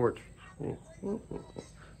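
A dog whimpering softly a few times, in short high whines.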